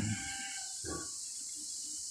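A pause with a steady, faint high-pitched background hiss and one faint, short sound about a second in.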